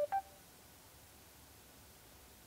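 Mercedes-Benz MBUX voice assistant chime: two short electronic beeps in quick succession, a lower note then a higher one, then near silence in the car cabin.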